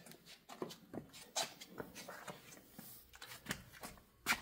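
Quiet room with faint, scattered small clicks and scuffs: footsteps on a concrete floor and handling noise as someone walks a few steps.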